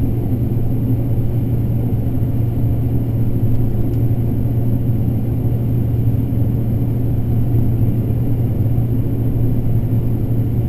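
Combine harvester running steadily while shelling corn, heard from inside the cab: a constant low drone.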